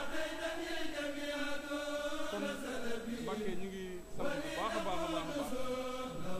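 Male voice chanting a religious song in long, drawn-out notes, with a short break about four seconds in before the chant picks up again on a rising note.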